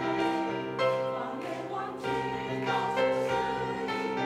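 A choir of older women singing together, holding long notes that change about once a second.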